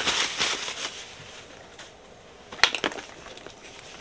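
White wrapping crinkling and rustling as it is pulled off a bag strap, busiest in the first second and then fading. A few sharp clicks follow about two and a half seconds in.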